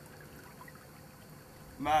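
Shallow river water running over a rocky riffle: a faint, steady trickling rush.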